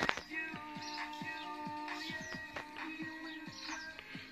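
Background music with held notes that change pitch every second or so over short plucked low notes, and a single sharp knock right at the start.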